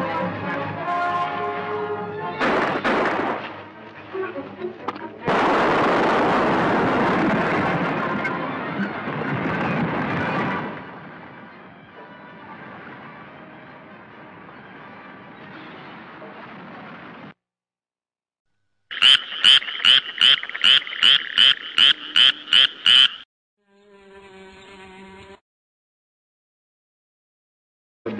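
Film soundtrack: dramatic orchestral music, then an explosion whose noise dies away over several seconds. After a short silence comes a rapid run of about a dozen loud pulsing tones, about three a second, then a brief fainter steady tone.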